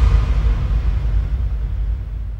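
Deep low rumble of the closing bass impact of an electronic dance track, its noisy tail slowly fading out.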